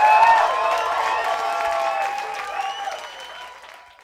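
Audience clapping and cheering with high whoops as a band's tune ends, fading out toward the end.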